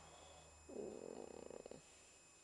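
A dog's low, purr-like contented grumble, lasting about a second and fluttering rapidly as it fades out.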